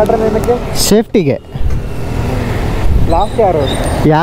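Low, steady rumble of motor vehicle engines, with people talking over it in short bursts.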